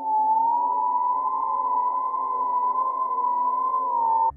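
A meme sound effect: one long, steady high-pitched electronic tone with fainter lower overtones, held without a break.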